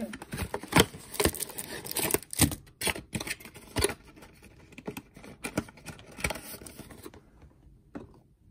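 Scattered clicks, taps and light scrapes of trading cards and their packaging being handled on a table, thinning out and stopping about seven seconds in.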